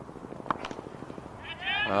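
Cricket bat striking the ball, one sharp knock about half a second in, followed near the end by a high-pitched voice calling out.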